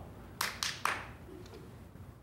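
Three quick hand claps, a little under a quarter second apart, about half a second in.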